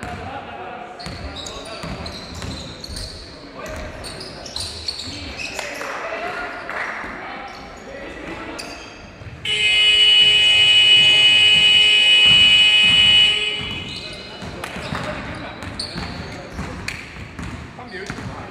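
Gym game buzzer sounding once for about four seconds, starting about halfway through: a steady, harsh, flat blare that marks a stop in play. Around it, players' voices and a basketball bouncing on the court floor echo in the hall.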